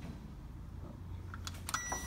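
A few sharp clicks at a glass shop entry door, then near the end a single steady, high electronic beep as the door is let open.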